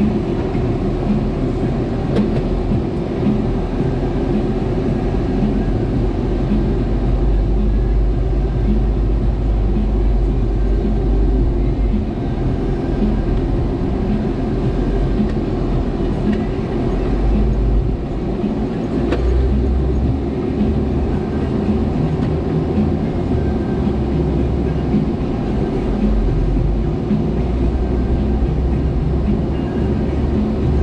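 A Jeep's engine and road noise heard from inside the cabin while driving: a steady low rumble, with a small shift in its lowest notes about twelve seconds in and again a few seconds later.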